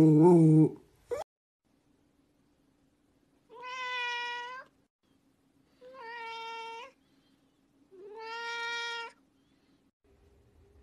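A dog gives a short vocal sound in the first second, then a cat meows three times, each meow about a second long and fairly steady in pitch.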